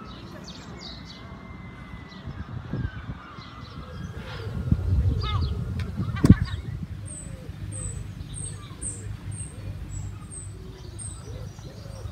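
Birds calling, among them a small bird repeating a short high chirp about twice a second through the second half. Underneath runs a low rumble, with one sharp knock about six seconds in, the loudest sound.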